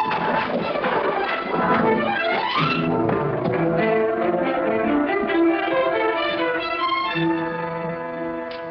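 Dramatic orchestral film score led by brass, with a rising run about two and a half seconds in, followed by held chords.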